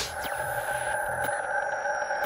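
Synthesized logo-sting sound effect: a steady electronic drone of several held tones, with a few faint ticks and thin sliding tones over it.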